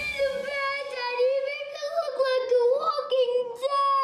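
A young girl wailing, one long high-pitched cry held with a slight waver and broken only briefly near the end.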